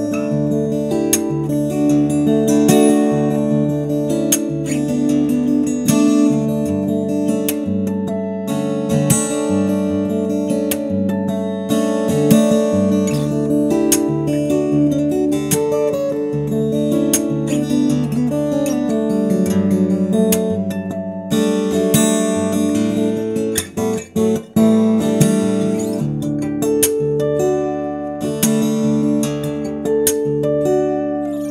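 McPherson Sable carbon-fibre acoustic guitar with a basket-weave top, fingerpicked in flowing arpeggios with ringing, sustained notes. The playing breaks off briefly a few times about three-quarters of the way through.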